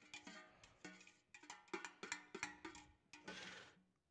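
Spoon stirring batter in a metal mixing bowl: a run of faint clinks against the bowl, a few a second, each with a short ring, and a brief scrape near the end.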